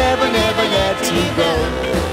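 1960s ska record playing: a full band with a regular beat in the bass and a gliding melody line over it.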